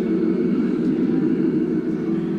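Synthesizer playing a low drone that flutters rapidly, like a fast-modulated tone.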